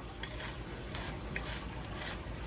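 A whisk stirring thick sugar syrup in a pan: soft swishing with a couple of light clicks of the whisk against the pan.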